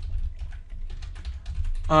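Typing on a computer keyboard: a quick, uneven run of key clicks, about ten keystrokes over two seconds.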